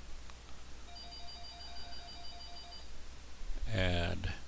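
A faint electronic trilling tone, several pitches pulsing about five times a second, lasting about two seconds over a low steady hum, like a phone or computer ringing.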